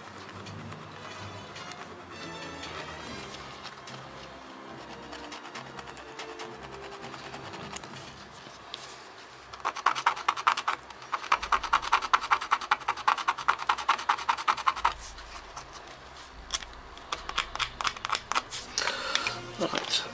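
A small hand file scraping a brass hinge in quick, rapid strokes, cleaning the metal before it is soldered; the scraping starts about halfway through, runs for about five seconds, and comes back in a few short scratches near the end. Faint music plays underneath.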